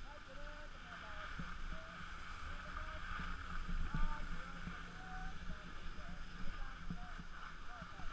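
Skis sliding over snow, a steady hiss throughout, with wind rumbling on the microphone. Short, faint voice sounds come through now and then.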